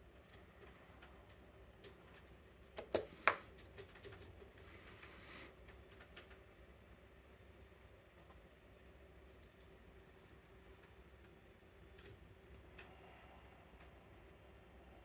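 Two sharp metallic clicks, close together about three seconds in, from the parts of a Medeco lock cylinder being handled: the brass housing, the plug follower and the keyed plug. Faint handling noise follows.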